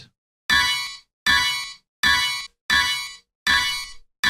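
A hip hop sample loop playing back through Loopcloud's Tone Box effect: a ringing, metallic, bell-like note struck five times, evenly, about every three-quarters of a second, each hit fading before the next.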